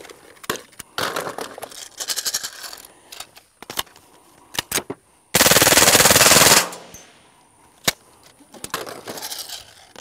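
Full-auto .22 LR fire from a CMMG AR upper through a KGM Swarm titanium suppressor: a rapid burst lasting about a second, midway. Scattered single sharp cracks come before and after it.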